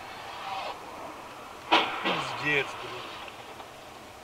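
A single sharp crash of two cars colliding, about two seconds in, then a man's short exclamation with a falling pitch.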